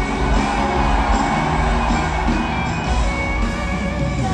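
Live rock band playing in a large stadium, with the crowd cheering over the music.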